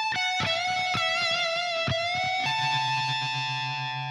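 Stratocaster-style electric guitar playing a sustained lead phrase: a string bent up a whole step at the 17th fret on the B string and held with a slight waver. About two and a half seconds in, the 17th fret on the high E string joins it as a higher note, over a low ringing note.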